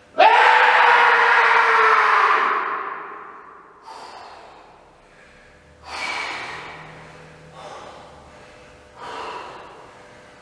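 A man's long, loud, strained vocal groan, held for over two seconds and falling away at its end. It is followed by several heavy gasping breaths about every one and a half to two seconds: a strongman straining and then catching his breath after heavy exertion.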